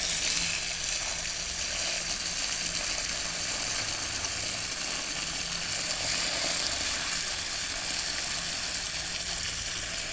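Garden hose pistol-grip spray nozzle running a steady stream of water into soil-filled plant pots: a continuous hiss and splash.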